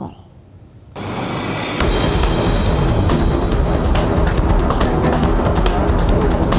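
A short quiet gap, then about a second in a background music bed starts up, with a low bass beat coming in shortly after and steady percussive hits.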